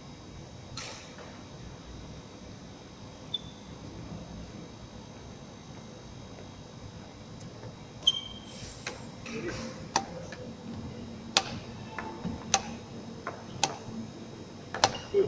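Sharp, irregular footfalls and brief shoe squeaks on a wooden sports-hall floor during a badminton footwork drill, starting about eight seconds in at roughly one a second. Before that only the steady hum of the hall's wall fans.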